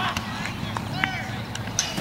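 Faint shouts from players across a flag football field over steady outdoor background noise, with a couple of brief clicks.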